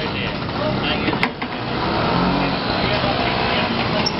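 Busy street noise: motor scooters passing close, with people talking all around. There is one sharp click a little over a second in.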